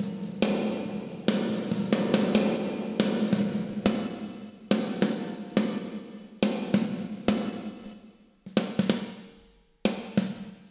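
A drum kit (kick, snare and hi-hat hits) playing through the Waves Abbey Road Reverb Plates plugin, an emulation of the studio's EMT plate reverbs. Each hit is followed by a long, metallic-sounding reverb tail. The plate selection is being stepped through, so the tone and resonance of the reverb change.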